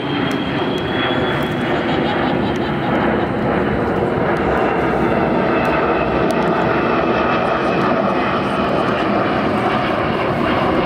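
KC-135R Stratotanker flying low overhead on its four CFM F108 turbofan engines: steady, loud jet noise with a faint high whine in it.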